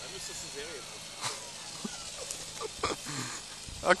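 Small electric RC helicopter's motor and rotor whine, falling in pitch, with a few short knocks.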